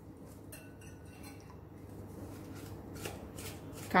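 Black salt being shaken from a plastic shaker into a glass bowl of dry snack mix: a few faint, irregular shakes with grains pattering onto the mix.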